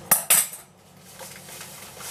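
Two quick, sharp clinks of kitchenware in the first half second, as food is being salted.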